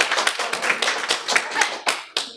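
Audience applause: many hands clapping densely and irregularly, stopping right at the end.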